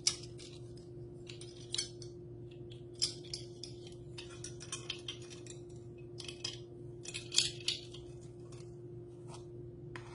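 Plastic measuring spoons clicking and scraping against a can of baking powder as a spoonful is scooped out and levelled, with scattered light clinks, over a steady low hum.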